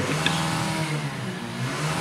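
Steady low mechanical hum, even and unchanging, with a faint higher hiss over it.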